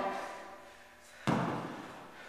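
Kettlebell dropped onto a rubber gym floor: one heavy thud just over a second in that dies away over about half a second.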